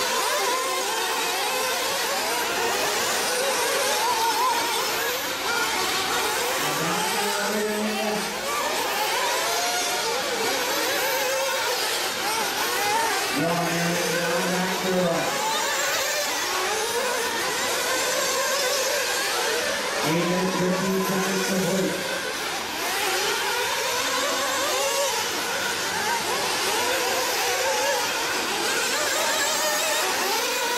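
Several nitro-powered 1/8-scale RC buggy engines racing at once, their high-pitched whines overlapping and constantly rising and falling in pitch as the cars accelerate and brake around the track.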